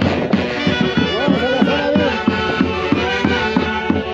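Live traditional Andean festival music from a band, several melodic lines with sliding pitches over a regular drum beat.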